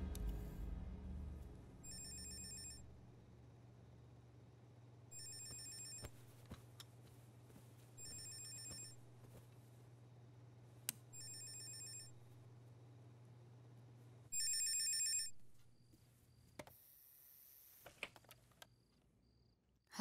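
Corded landline telephone ringing with an electronic trill: five rings, each just under a second long and about three seconds apart, over a low steady hum that stops after the last ring. A few clicks follow near the end.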